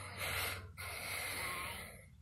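Two rushes of breath close to the microphone: a short one, then a longer one of about a second.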